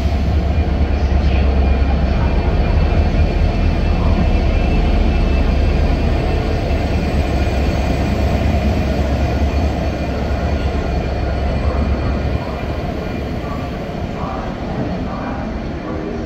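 Class 69 diesel-electric locomotive passing slowly at the head of a freight train, its EMD 710 diesel engine giving a deep, steady rumble. About three-quarters of the way through, the engine sound drops away suddenly, leaving the quieter rolling of the freight wagons on the rails.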